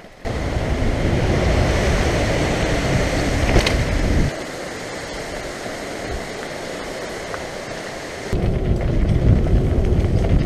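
Wind buffeting a bike-mounted camera's microphone over the rumble of a mountain bike rolling down a rough, rocky trail. The heavy low rumble drops away about four seconds in and comes back near the end, with one sharp click in between.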